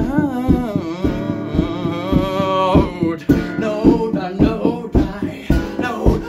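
A man singing to a strummed acoustic guitar, holding a long wavering note for about the first half before the strumming comes to the fore.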